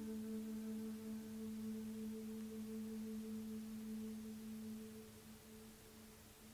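Soft ambient relaxation music: two steady held notes, a low one and one about an octave above it, fading away in the last second.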